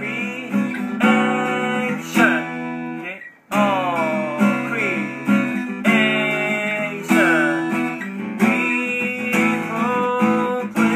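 Steel-string acoustic guitar strummed through a chord progression, a new chord about every second or so. The strings stop ringing briefly a little past three seconds in, then the strumming picks up again.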